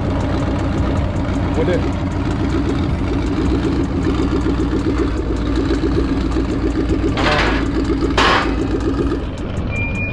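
A pickup truck's engine idling steadily, with a low rumble and a rapid clatter. Two short harsh noises come about seven and eight seconds in, a second apart.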